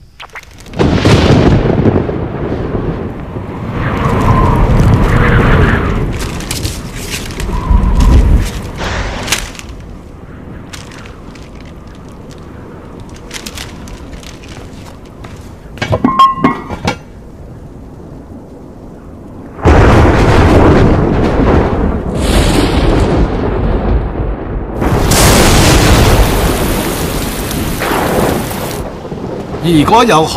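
Thunderstorm: loud rumbles of thunder about a second in, around four to six seconds and near eight seconds, then a long stretch of loud rushing noise like heavy rain and thunder from about twenty seconds in until shortly before the end.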